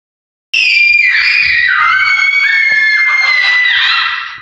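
Two young children screaming at the top of their voices in one long, high-pitched shriek that starts about half a second in and holds for over three seconds, with their pitches wavering and stepping apart.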